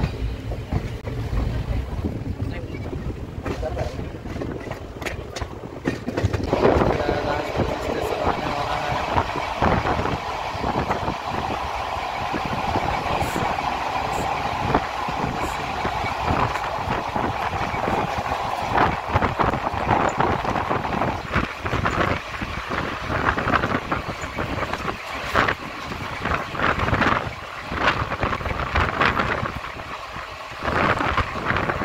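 Passenger train coach running along the track, heard from inside at a window: a steady running noise with the clatter of wheels on rails.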